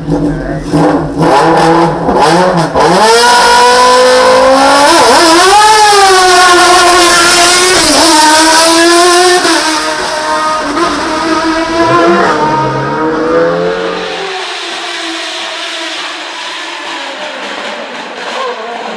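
Single-seater race car launching from the hill-climb start and accelerating hard up through the gears. Its engine pitch climbs and drops back at each of several upshifts. It is very loud at first, then quieter and more distant near the end.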